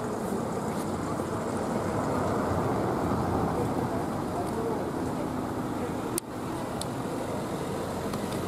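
Street ambience: a steady rumble of road traffic with people's voices faintly mixed in, and no bells ringing. A sharp click and a brief drop in level come about six seconds in.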